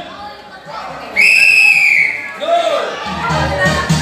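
A single whistle blast of about a second, the start signal for a timed game, with voices of the people around it. Music with a steady low beat comes in near the end.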